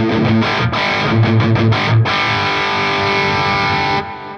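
Ernie Ball Music Man Axis electric guitar played with heavy distortion through the Boss SD-2 overdrive pedal, engaged wirelessly from the footswitch. A quick run of palm-muted low chugs for about two seconds, then a chord struck and left to ring.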